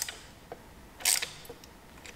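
Screwdriver fastening the aluminum spacer at the bottom of the power steering pump bracket: a brief metallic scrape about a second in, with a couple of faint ticks around it.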